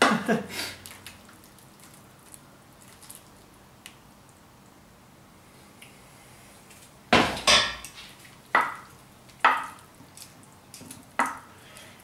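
A stainless steel frying pan set down with a clatter on the stovetop about seven seconds in, followed by four sharp knocks of a wooden spoon against the cookware as tomato sauce is spread.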